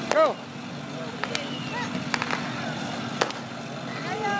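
A steady low engine hum from motor traffic, with a motorcycle close by. A few sharp clicks come through it, and children's voices chirp faintly.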